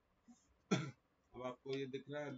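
A man clears his throat once, a short sharp burst, then starts speaking about a second later.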